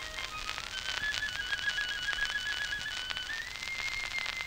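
Violin playing a high, slow melody with vibrato, climbing to a long held high note about three seconds in. The hiss and crackle of an old 1928 disc recording run underneath.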